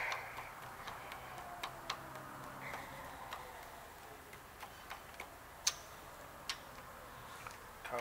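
Scattered sharp clicks and light metallic taps from setting up a milling machine's quill stop and controls. A faint falling whine and a low hum die away over the first three seconds.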